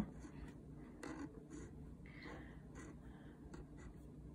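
Faint scratching of a Micron 005 fineliner's fine nib on textured watercolour paper, in a series of short strokes.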